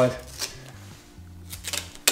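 A few soft clicks and rustles of gloved hands handling tape and glass as a strip of cloth tape is pressed over the top edge of a freshly bonded van window to stop it sliding.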